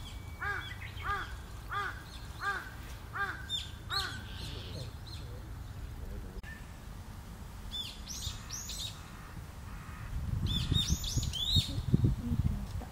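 A bird calling six times in an even series, about one and a half calls a second, each call a short arched note with a ringing, many-toned quality. Higher, thin chirps of small birds follow later, and a low rumble comes in near the end.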